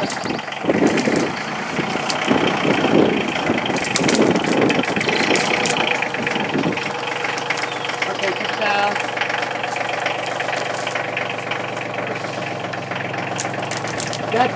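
Compact farm tractor engine running steadily as its front-end loader lifts a full bucket of compost material over the bin, with people talking over it in the first half.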